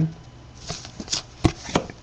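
Trading cards being handled and set down on a table: a few light clicks and short slides of card stock, the sharpest click a little past halfway.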